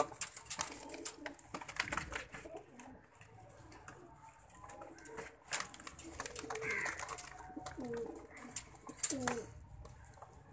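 Domestic pigeons cooing in a wire cage, several low calls mostly in the second half, over scattered sharp clicks and rustling.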